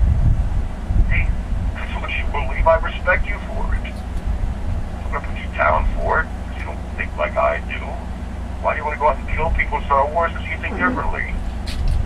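A voice talking, thin and narrow-sounding as if through a telephone line, over a steady low hum.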